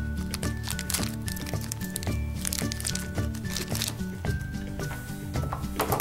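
Light background music, a melody of short notes over a bass line, with a few short clicks and rustles from a plastic toy wrapper being cut open and handled.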